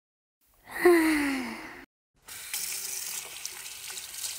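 A single-lever bathroom tap is turned on and water runs steadily into the sink from about two seconds in. Just before it, about a second in, comes a short falling pitched tone, the loudest sound here.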